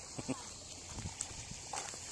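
A few irregular footsteps clicking on a paved seafront walkway, with a brief voice sound near the start.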